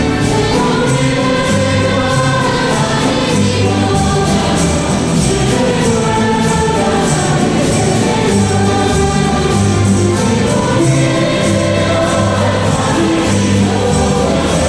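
Choir singing a song at mass, accompanied by instruments with a bass line and a steady percussion beat.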